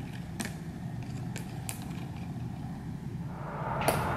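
A steady low background rumble with a few faint clicks; near the end the noise grows louder and brighter, ending in a sharper click.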